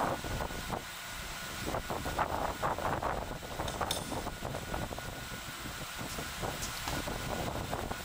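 Steady background room noise with a few soft rustling bursts, the most noticeable about two to three seconds in.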